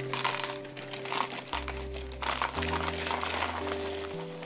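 A plastic snack bag crinkling as crunchy stick snacks are shaken out into a plastic storage container, with the loudest crackling in the second half. Background music with steady held notes and bass plays underneath.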